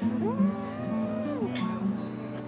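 A woman's closed-mouth 'mmm' of delight while chewing: it rises, holds for about a second, then falls away, over light background music.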